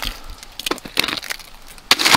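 Thick ice from an ice storm cracking and clinking as a sheet of it is set down and breaks among loose shards of ice: a handful of sharp cracks, the loudest near the end.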